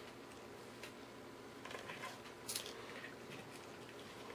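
Faint handling sounds of wire being bent and laid along a paper template on a board: soft rustles and scrapes, with a couple of brief ones about two seconds in and a sharper one a moment later.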